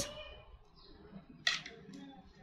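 Soft handling of 4 mm rosewood knitting needles and cotton yarn as stitches are worked, with one short click about one and a half seconds in.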